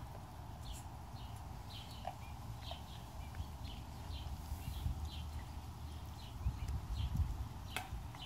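A small bird chirping in short, falling calls, about one or two a second, over a low outdoor rumble that grows louder near the end; a single sharp click comes just before the end.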